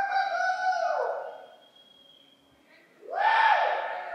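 Two long, loud "woo" cheers shouted for the graduate: one at the start that drops in pitch as it ends after about a second, and a second rising one about three seconds in.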